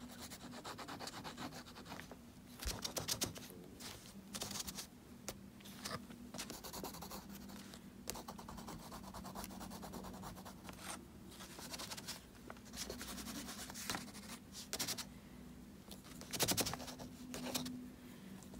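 A crayon scratching over sketchbook paper in runs of quick shading strokes, with short pauses between them. A faint steady low hum runs underneath.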